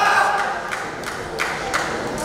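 Crowd of spectators, many voices shouting at once, with a few sharp knocks.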